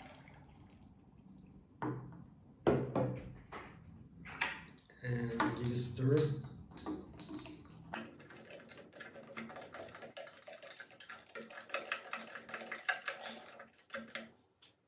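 Metal spoon stirring wet sand in a small glass of water to wash out the dust: from about halfway through, a fast run of light scraping clinks against the glass that stops near the end.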